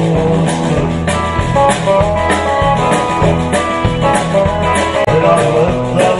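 Live oldies band playing a song: electric guitar, bass and drum kit keeping a steady beat of about two hits a second, with a lead singer on microphone.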